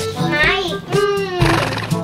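A horse whinny played by a plush ride-on toy horse's sound unit, heard over background music.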